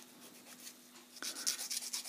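Small plastic model-kit part being filed with a nail file: quiet at first, then a quick run of short scratchy strokes starting a little over a second in, as the sprue cut is cleaned up.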